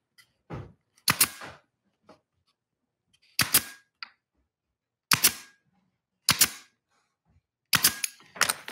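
Senco pneumatic nailer firing into a thin plywood box, five sharp shots about a second or two apart as fasteners are driven along the joint. A few faint clicks come between the shots as the nose is set on the wood.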